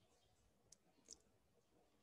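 Near silence with two faint clicks a little under half a second apart, near the middle.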